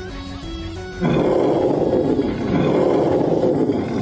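Soft music notes, then about a second in a loud, sustained roar breaks out over the score: the film sound effect of the charging demon army.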